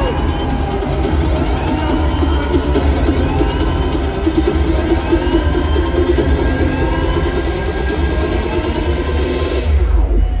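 Wrestling entrance music played loudly over an arena PA system: an electronic track with a heavy bass drum and rising sweeps about every second and a half, recorded from among the crowd. The music drops out just before the end.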